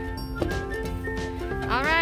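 Background music, a melody of steady held notes. A brief voice rises and falls in pitch near the end.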